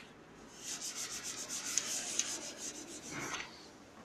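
Blackboard duster rubbing quickly back and forth across a chalkboard, wiping off chalk. The scraping strokes start about half a second in and stop shortly before the end.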